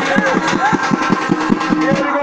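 A drum beaten in a fast, even rhythm, about seven strokes a second, as accompaniment to a ritual dance.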